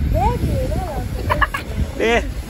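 A child's voice making high, sliding, sing-song squeals and yelps whose pitch rises and falls, with a cluster of short squeaks about halfway through. A steady low street-traffic rumble runs underneath.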